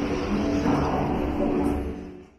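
Background music with held tones, over indistinct crowd noise and a low rumble.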